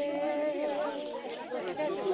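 A group of women singing together, one long note held through the first second before the melody moves on.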